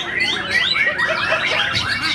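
White-rumped shamas (murai batu) singing together: dense, overlapping runs of quick whistled glides and chattering notes.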